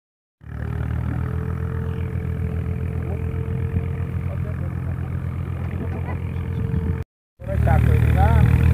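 A steady low rumble with a constant faint hum that cuts off suddenly near the end. After a brief silence a goat begins to bleat.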